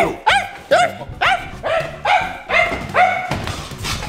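Rapid dog-style barking: a string of about eight short, sharp barks, two to three a second.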